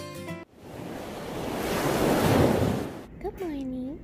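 A whoosh of rushing noise that swells and fades over about two and a half seconds, then a Siberian husky's short wavering vocalization that dips and rises in pitch near the end.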